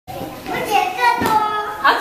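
Young children's high-pitched voices chattering and calling out, with a brief sharp clap or slap a little over a second in.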